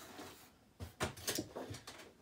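Toy packaging and a cardboard shipping box being handled: quiet at first, then a few quick knocks and rustles from about a second in.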